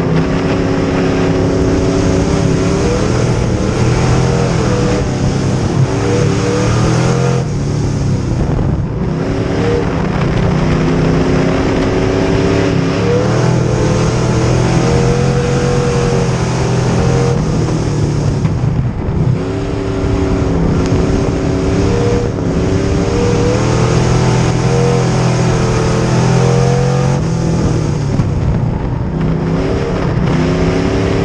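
A Bomber-class dirt-track race car's engine heard from inside the cockpit. It revs up under throttle and falls back off several times in a repeating rise and drop of pitch, as it accelerates and lifts around the track.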